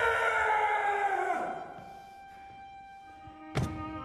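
Film score: a loud held chord that sinks slightly in pitch and fades away over the first two seconds, leaving quiet sustained tones. A single sharp thud about three and a half seconds in.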